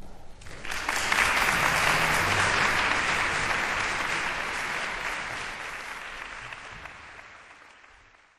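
Audience applauding. It breaks out suddenly about half a second in, then fades out gradually.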